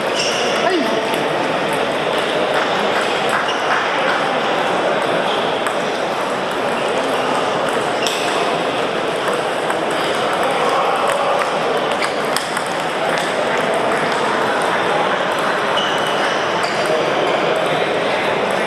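Many small, sharp clicks of celluloid-type table tennis balls hitting bats and tables at several tables at once, over a steady hubbub of voices.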